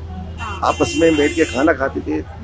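A man talking, over a steady low hum.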